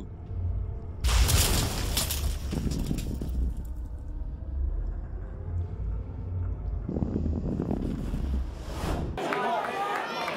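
Cinematic title-graphic sound effect: a deep bass rumble with a sudden crashing hit about a second in that fades away, then a second swell that cuts off suddenly near the end.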